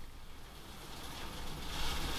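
Steady rain falling, with a low rumble underneath, growing a little louder near the end.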